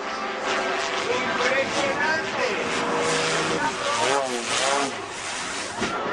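A stunt plane's engine, its pitch swinging up and down as the plane spirals out of control, with voices over it.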